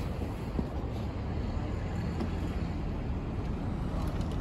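Steady outdoor city ambience: a low rumble of distant road traffic, with some wind on the microphone.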